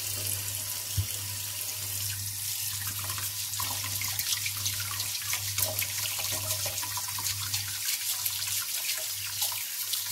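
Kitchen tap running into a stainless steel sink partly full of water, with frequent small splashes as potatoes are turned and rubbed by hand under the stream. A low hum sits underneath.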